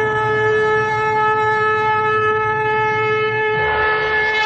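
Background music: one long held note over a low drone, the harmony changing just before the end.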